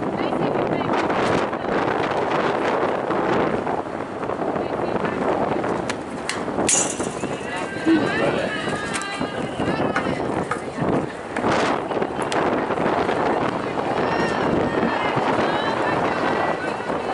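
Continuous babble of many voices from spectators and players chattering and calling out at a softball game, with one sharp crack a little past six seconds in.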